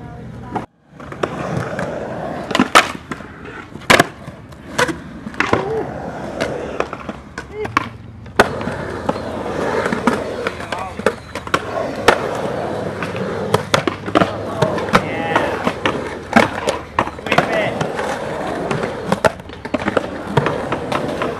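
Skateboard wheels rolling on concrete, broken by many sharp pops and clacks as the board's tail snaps and the board lands on tricks. There are brief cuts between takes, one almost silent about a second in.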